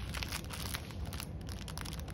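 Plastic shrink-wrap around a bundle of diamond-painting drill bags crinkling and crackling as it is handled and turned in the hands.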